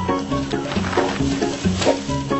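A tiger growling and snarling in rough bursts over background music.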